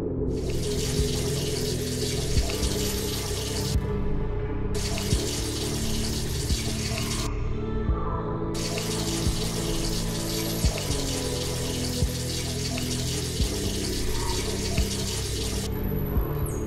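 Hiss of running water in three long stretches that start and stop abruptly, over dark background music of low sustained notes with a soft pulse about every second and a half.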